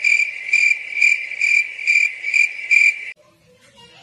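Cricket chirping sound effect, the 'crickets' awkward-silence gag: a steady high trill pulsing about twice a second, cutting off suddenly a little after three seconds in.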